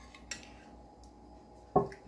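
A metal ladle clinking and scraping against a glass bowl of thick homemade yogurt, a couple of faint clicks near the start, then quiet.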